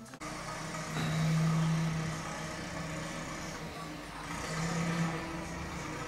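Container bulk loader machinery running with a steady low hum and mechanical noise. The hum grows louder about a second in and again near the end, as if working under load.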